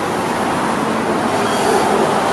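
Road traffic noise from a passing vehicle: a steady rush that grows slightly louder toward the end.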